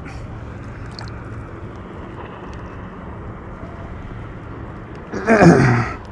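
Steady outdoor background noise with a few faint ticks, then about five seconds in a man's short, loud, wordless grunt of effort as he works to free a hook from a stingray.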